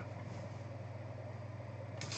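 Steady low hum with faint background hiss: room tone.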